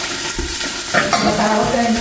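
Steady sizzle of chicken frying in its own rendered skin fat, with no oil added, under the lid of a Salad Master electric skillet.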